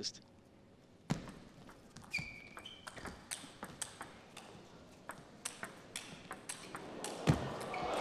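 Table tennis rally: the celluloid-type ball clicking back and forth off bats and table in quick succession, starting about a second in. There are a couple of short high squeaks about two seconds in and a louder hit near the end.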